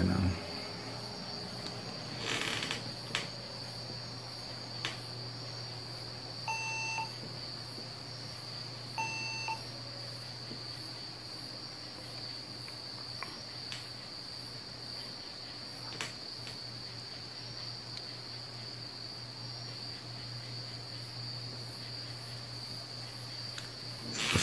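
HP Compaq dc7800 desktop PC powering on: its fan starts about a second in and runs with a low steady hum, and its system speaker gives two short beeps about two and a half seconds apart as the machine posts with a single memory stick installed. A faint steady high whine runs throughout.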